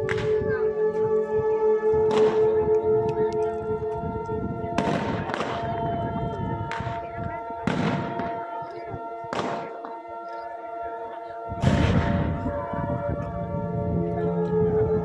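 Scattered black-powder gunshots from a battle reenactment, about eight sharp cracks at irregular intervals, each with a trailing echo; the loudest, heaviest one comes near the end. Steady music with long held tones plays under them.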